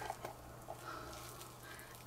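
Faint, light clicks and scuffs of a thin stick scraping leftover epoxy resin out of a silicone mixing cup into a silicone mould, over a steady low hum.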